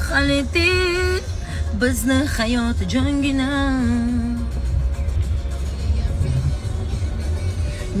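A woman singing in a car: wavering held notes for about the first half, then the singing stops. Under it all runs the car's steady low rumble.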